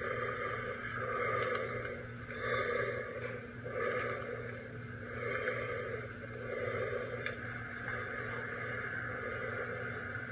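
Slow, heavy breathing through a mask on a horror film's soundtrack, one breath about every second and a bit. It is played back through a TV speaker and re-recorded, with a steady low hum under it.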